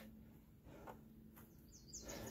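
Near silence outdoors, with a few faint, brief, high bird chirps near the end.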